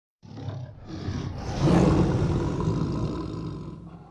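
Lion roar opening the song: two short growls, then a long roar that swells about one and a half seconds in and slowly fades away.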